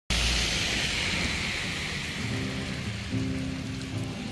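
Background music: a hissing noise at the start fades over about two seconds, then sustained low notes come in.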